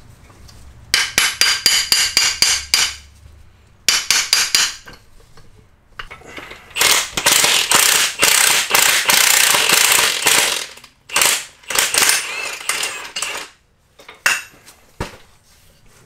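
Hammer blows on a steel axle-shaft U-joint, driving the joint back through its yoke, in two quick runs of sharp, ringing metal strikes in the first five seconds. A longer stretch of dense metal clatter follows in the middle, and shorter bursts come near the end.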